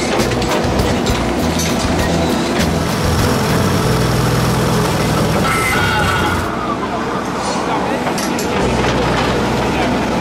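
Volvo EC210B excavator's diesel engine working under load while its XR20 Xcentric Ripper, a vibrating ripper attachment, breaks up lava stone. A dense run of sharp knocks and cracks comes from the rock, thickest in the first few seconds.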